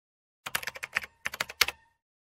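Keyboard typing sound effect: two quick runs of crisp key clicks with a short pause between them.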